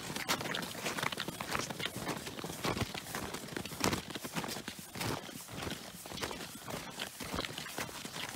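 Several people walking on snowshoes over snow, their steps crunching in a quick, uneven patter of a few steps a second.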